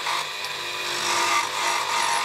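Electric wood lathe running while a hand-held steel turning chisel cuts beads into a spinning wooden spindle: a steady motor hum under a continuous scraping cut.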